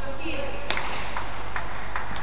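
Arena ambience of an indoor badminton hall between rallies: a steady low hum, a few sharp taps (one about two-thirds of a second in, more near the end) and a short squeak near the start.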